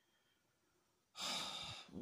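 Near silence, then a little past halfway a man's long exhaling sigh into the phone microphone, lasting under a second.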